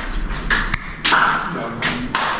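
Rustling and handling noise on a handheld camera's microphone as clothing brushes past it, with one sharp tap about three-quarters of a second in.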